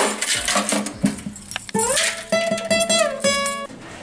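Acoustic guitar strummed and plucked briefly. In the second half a held pitched note slides up, holds, slides back down, and is followed by a shorter note.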